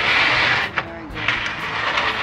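Old sliding patio door scraping along its track as it is pushed, a harsh grinding for most of the first second, then quieter scraping. The door is hard to push, so it drags in its track.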